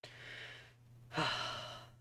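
A person draws a breath, then about a second in lets out a louder sigh whose voiced start falls in pitch. A steady low electrical hum runs underneath.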